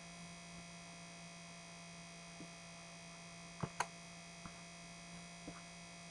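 Faint, steady low electrical hum in the microphone signal, with two quick mouse clicks a little over halfway through.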